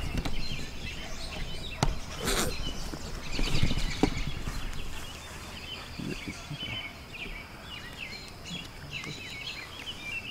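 A dense chorus of short, repeated chirping calls from wildlife around the pond, over a thin steady high drone. A sharp click comes about two seconds in, a brief rustle just after, and a few low knocks around four seconds in.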